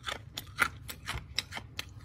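A decades-old stick of 1988 wax-pack bubble gum being chewed: a quick run of sharp, brittle crunches, about four or five a second. The gum has gone hard and crunchy with age.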